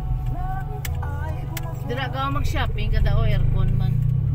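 Steady low rumble of a car driving, heard from inside the cabin, with voices over it.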